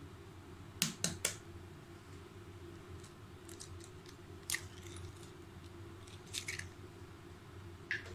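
An egg tapped three times in quick succession against the rim of a bowl to crack its shell, followed by a few lighter clicks and crackles of the shell as it is pried open and emptied.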